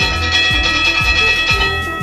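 Background music with a steady beat, about two beats a second, under a held high chord that fades near the end.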